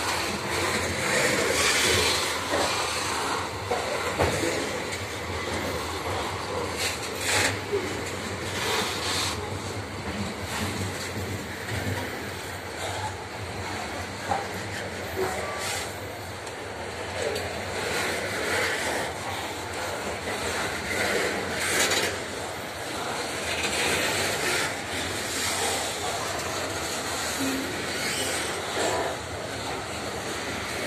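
Loaded grain hopper wagons of a freight train rolling past close by: a steady rumble of steel wheels on rail, broken by irregular sharp clanks and knocks from the wagons.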